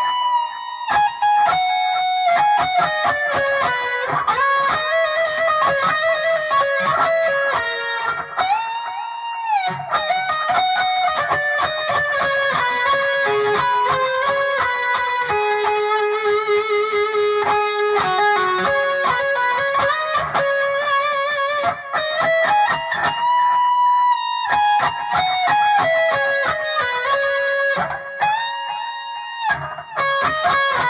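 Keipro electric guitar playing a hard-rock lead solo at slow speed: single picked notes, some sustained, with several string bends pushed up, held and released, around a third of the way in and twice near the end.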